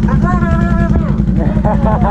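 ATV engine idling steadily, a low even pulse running under the voices.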